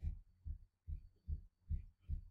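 A steady low bass-drum beat, about two and a half thumps a second, from faint background music.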